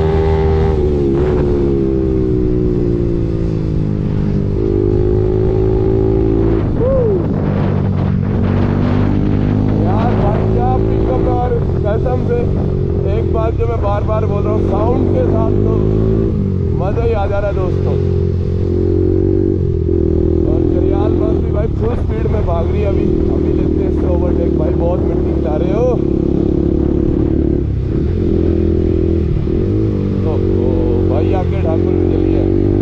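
Bajaj Pulsar 200NS single-cylinder engine running under way through an aftermarket Akrapovic-style exhaust, its pitch dropping and climbing again several times as the rider works the throttle and gears.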